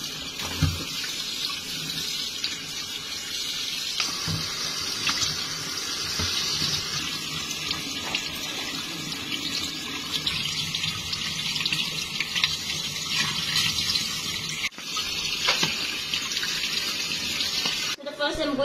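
Kitchen faucet running steadily into a stainless steel sink as crabs and then shrimp are rinsed under it in a wire mesh basket. A couple of low knocks come near the start and about four seconds in, and the stream briefly breaks off about three seconds before the end.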